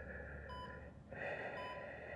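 Heavy, raspy breathing through a gas mask, a breath swelling about a second in, with a short electronic beep about once a second.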